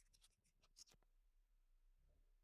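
Near silence, with a few faint crinkles and ticks in the first second from hands handling plastic bubble-wrap sheeting on a greenhouse frame.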